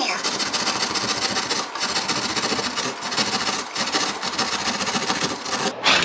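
Hand jab saw cutting drywall in continuous back-and-forth strokes, with brief pauses, stopping just before the end. The hole is being enlarged so an electrical box will fit.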